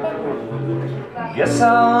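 Acoustic guitar playing on its own between sung lines. About a second and a half in, a man's voice comes in singing the next line over the guitar.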